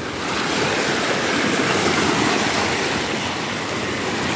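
Small waves washing and foaming over shoreline rocks: a steady rush of surf that swells a little in the first second.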